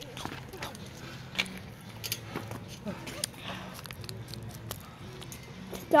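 Faint background voices and scattered light clicks, ending in a loud shouted "Stop."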